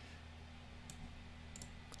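A few faint computer mouse clicks, one about a second in and a pair near the end, over a steady low electrical hum.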